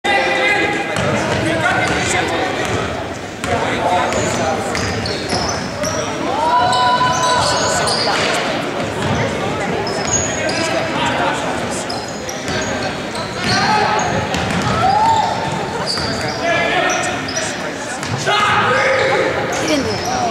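Basketball game on a hardwood gym floor: a ball bouncing repeatedly, short sneaker squeaks, and shouting from players and spectators, all echoing in a large hall.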